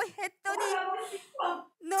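A woman's quiet, wavering voice in a few short broken sounds, with brief gaps between them.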